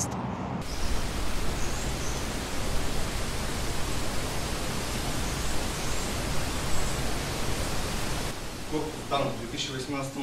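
A steady, even rushing noise with no tone or rhythm, lasting about eight seconds and then fading as a voice begins near the end.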